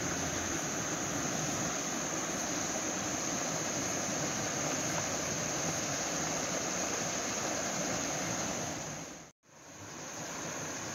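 Steady rush of a flood-swollen river, with a constant high insect drone over it. The sound cuts out briefly near the end.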